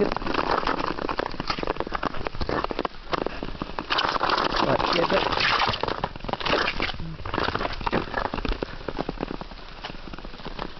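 Ice skate blades scraping and crackling over rough, frosty natural ice in uneven surges of strokes, dropping away near the end.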